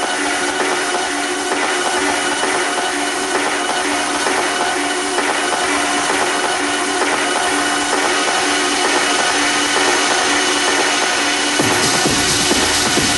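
Techno from a live DJ set, with the bass filtered out: a dense, hissing upper-range texture over steady held notes. The bass comes back in just before the end.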